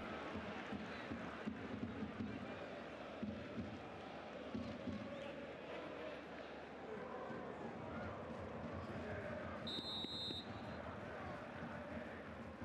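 Stadium crowd noise: a steady low hum of many fans in the stands. About ten seconds in, a short high-pitched whistle sounds once.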